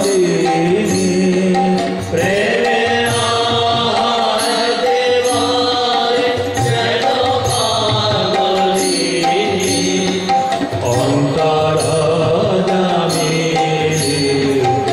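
Devotional Kali kirtan: harmonium and violin playing a melody with chanted singing, over a steady beat of sharp strokes about once a second.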